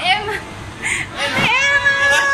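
A person's voice: a short falling high cry at the start, then from about halfway in a high-pitched call that rises and is held steady for about a second, like a drawn-out squeal or 'wooo'.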